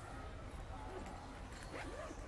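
A few faint, short animal calls, one rising and falling near the end, over a steady low rumble of wind on the microphone.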